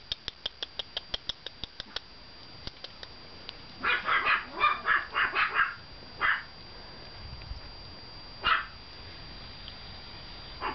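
Two-month-old puppies yapping in play: a quick string of short yaps about four seconds in, then two more single yaps, the last near the end. A fast run of light clicks comes before them, in the first two seconds.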